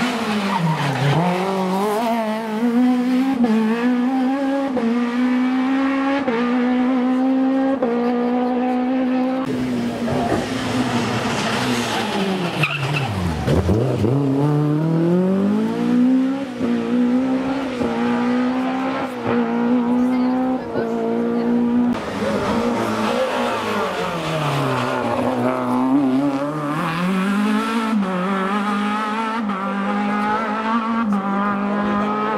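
Rally car engines running hard at full throttle, one car after another. The pitch rises through the gears and drops sharply on braking and downshifts into corners, about a second in, around the middle and again near the end, then climbs as each car accelerates away.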